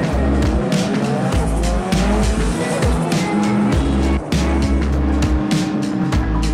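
Drift car engine revving, its pitch rising and falling in the first couple of seconds, with tyres squealing, heard over a loud music track with a heavy beat.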